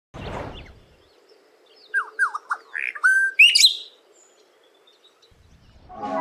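A short rushing noise, then a run of bird chirps: several quick downward-sweeping notes followed by higher, louder calls, ending about four seconds in.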